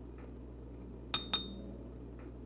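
Two quick, light glass clinks about a fifth of a second apart, a little over a second in, as a glass hot sauce bottle is handled against a glass.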